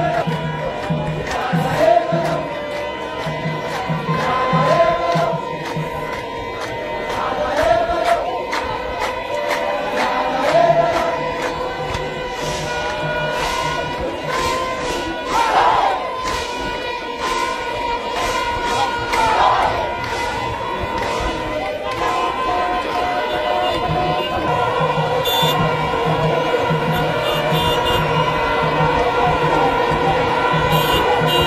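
A large crowd chanting an Ethiopian Orthodox hymn (mezmur) over a regular drumbeat and a sustained held tone. The drum drops back in the middle and comes back strongly near the end.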